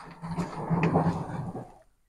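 Rabbit-urine liquid fertilizer poured from a small tin can onto the soil of a plant in a cut plastic jerrycan planter. It is one splashing pour that swells, then fades out just before the end.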